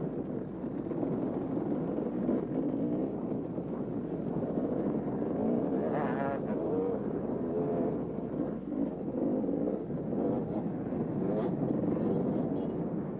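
Dirt bike engine running under the rider, its pitch rising and falling with the throttle over a rough dirt trail, with a sharp rev about halfway through.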